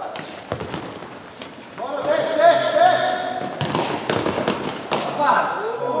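Futsal ball being kicked and bouncing on a sports-hall floor in sharp thuds, while players shout across the court, one long held shout about two seconds in and more shouts near the end.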